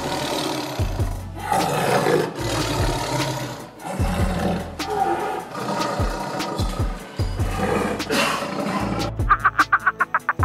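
A tiger gives a series of rough calls, each about a second long, one after another over background music. Near the end a bird's rapid clucking calls start, about eight a second.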